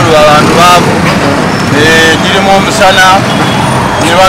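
A man speaking in an interview, over a steady background noise.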